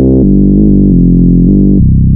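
Korg Electribe 2 sub bass: a sine-wave oscillator with its edit control turned way up, so the deep tone carries a gritty edge without any distortion effect. It plays a loud sequenced low line alone, the note changing several times.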